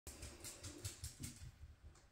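Faint, irregular soft taps and rustles, close to silence.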